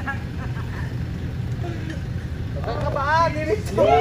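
4x4 pickup truck's engine running with a low, steady rumble as it crawls through deep mud ruts. People's voices call out in the last second or so, loudest at the end.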